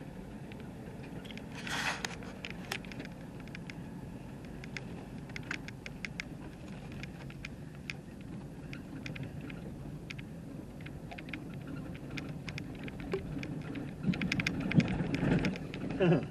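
Car cabin on a gravel road: a steady low rumble of engine and tyres with scattered small ticks and rattles. It grows louder and busier near the end.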